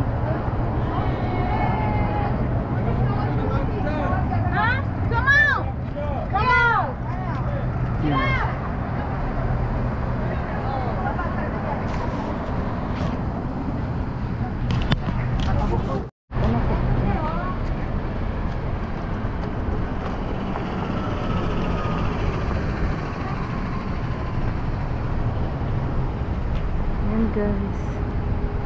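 Roadside street noise: steady traffic rumble from passing cars with wind on the microphone, and people's voices talking briefly in the first few seconds. The sound drops out for a moment about halfway through.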